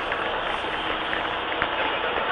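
Steady hiss and background noise from a police car dashcam's audio track, with a few faint clicks.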